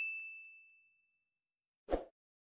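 A bright bell-like notification ding from the animation's bell button, ringing out and fading over about a second. A short click comes near the end.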